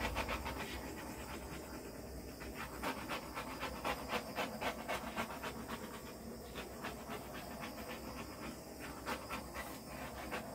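Handheld butane torch flame hissing with a quick, pulsing flutter as it is swept over wet epoxy resin to pop surface bubbles.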